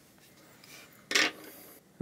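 Quiet handling of wooden coloured pencils over paper, with one brief rub or scrape a little over a second in.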